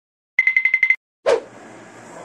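Title-card sound effect: a rapid trill of about seven high, bell-like rings in half a second, like a telephone bell. After a brief silence comes a sudden short hit that falls quickly in pitch, then faint steady room tone.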